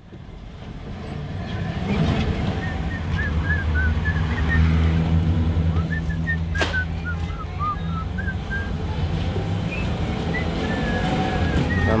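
A truck's engine running steadily, heard from inside the cab, fading in over the first couple of seconds. Light, short high chirps sound over it, and there is a single sharp click just past halfway.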